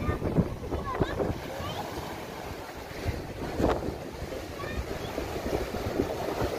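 Sea waves breaking and washing over a rocky shore, with wind rumbling on the microphone.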